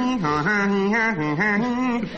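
A man's voice imitating a bagpipe chanter, singing a pipe tune in held notes that step up and down with quick dips between them.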